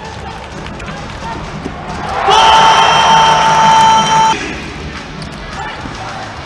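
One steady horn blast of about two seconds, starting about two seconds in and cutting off suddenly, over crowd cheering. The blast marks a goal in a futsal match.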